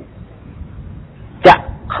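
A single short dog bark about one and a half seconds in, over a faint steady background hiss.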